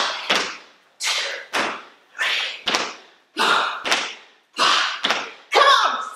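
Trainers landing on a hard studio floor during repeated squat jumps by two people: thuds in pairs, a pair about once a second, the two jumpers landing slightly out of step.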